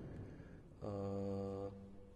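A man's held hesitation sound, a drawn-out "eee" at one steady low pitch, lasting under a second and starting about a second in.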